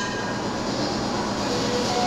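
Steady background hum and hiss of the room, even throughout, with no distinct knocks or clicks from the bar.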